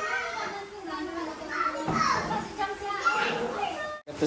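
Several voices, children's among them, talking and calling out in the background, mixed together with no one voice clearly in front.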